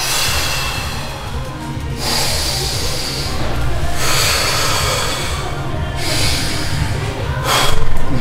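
A man taking two deep breaths in and out, each half lasting about two seconds, to recover after holding a pose on pressed breath. Background music plays under the breathing.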